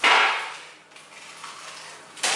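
A cardboard tube of refrigerated pizza dough bursting open along its seam with one sharp pop that dies away over about half a second, followed by faint handling of the tube.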